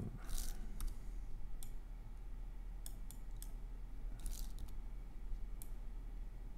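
Computer mouse clicks, sharp and scattered, about ten in all and some in quick pairs, with two short rustling scrapes.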